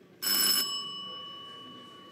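A small metal bell struck once, ringing with a clear pitch and fading slowly over the next two seconds.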